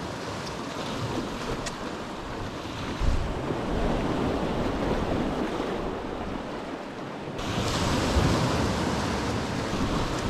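Small ocean waves washing and breaking over shoreline rocks, with wind buffeting the microphone. The surf swells louder twice, about three seconds in and again near the end.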